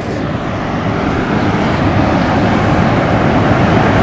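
A steady rushing noise, heaviest in the low range and growing slightly louder across the four seconds, with no distinct events.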